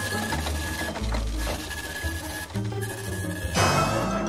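Office printer running as it prints a page and feeds it out, with a steady whir, over background music. A short rush of noise comes near the end.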